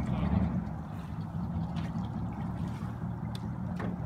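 Steady low engine hum of a motorboat, with no change in pitch.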